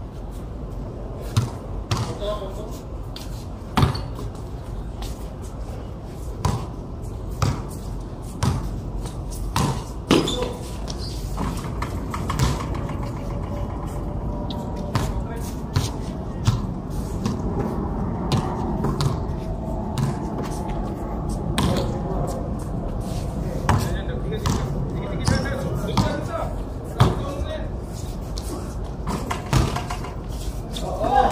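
Basketball bouncing on a concrete court in scattered single thuds at irregular intervals, with players' voices and shouts throughout.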